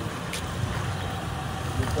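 A low, steady rumble of street background noise, with a short click about a third of a second in.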